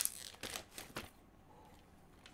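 Clear plastic shrink-wrap being peeled off a phone box: a sharp rip right at the start, then scattered crinkling that dies down after about a second.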